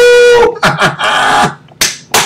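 A man's voice without words: a loud, high held note lasting about a second, with a slight rise at its start, then a string of short breathy bursts that fit laughter.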